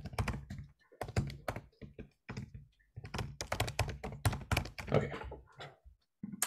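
Typing on a computer keyboard: quick runs of keystrokes broken by short pauses.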